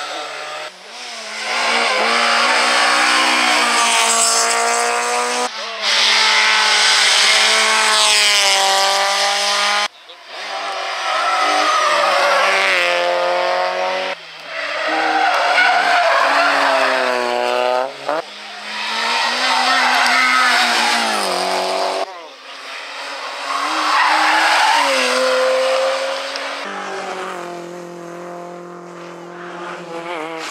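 Rally cars driven flat out through a hairpin bend one after another, their engines revving up and down with gear changes, with tyres squealing as they slide. The sound changes abruptly every few seconds as one car gives way to the next.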